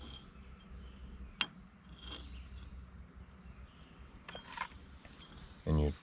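Steel sickle parts handled on a mower cutter bar: a single sharp metallic click about a second and a half in, then a few light clinks and scrapes as the sickle knife back and its sections are shifted.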